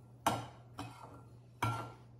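Metal spoon clinking twice against a glass mixing bowl while stirring a dry breadcrumb filling, each clink ringing briefly.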